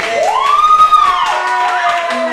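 Small audience clapping at the end of an operatic aria, with a long whooping cheer that rises and then falls in pitch, and shorter calls near the end.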